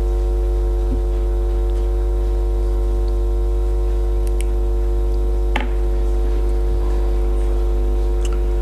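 Loud, steady electrical mains hum with a buzz of evenly spaced overtones, carried through the chamber's microphone and sound system. A couple of faint clicks come through it, about a second in and again just past halfway.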